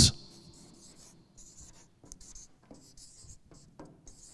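Marker pen writing a word on flipchart paper: a run of short, quiet scratching strokes in an uneven rhythm.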